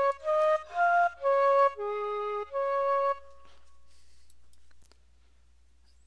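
Sampled Chinese xiao flute from Logic Pro's EXS24 sampler playing a short melody of about six separate notes, each roughly half a second long. The last note trails off a little after three seconds in.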